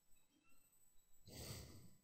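A single breath, sighed out close to the microphone about a second and a half in, over faint room tone.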